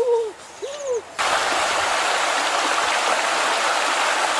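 Two short hooting calls in the first second, then, starting suddenly about a second in, a steady loud rush of water.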